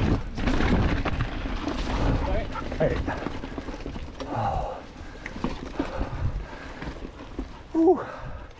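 Chromag Rootdown hardtail mountain bike rolling down a rocky dirt trail: tyre rumble and rattling of the bike over rocks and roots, loudest in the first few seconds and easing off after about the halfway point as it slows.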